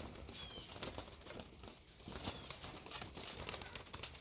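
A flock of homing pigeons moving about in a wire-mesh loft: wings flapping and many small scattered taps and scuffles.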